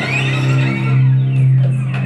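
Solo cello played with the bow: a low note is held steadily underneath while a higher line slides upward at the start and fades out about a second in.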